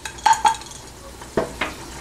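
A spatula stirring dry-roasting spices and dal in a nonstick pan, knocking against the pan a few times, around a third of a second in and again at about a second and a half.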